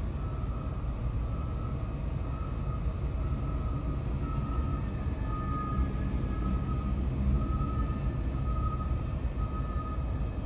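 Joey wheelchair lift's electric motor lowering its platform from the back of a minivan, a faint thin whine that wavers on and off over a steady low rumble, heard from inside the van's cabin.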